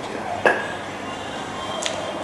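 Small handling clicks: one sharp click about half a second in and a fainter tick near the end, over a steady low room hiss, as a cigar is handled and raised to the mouth.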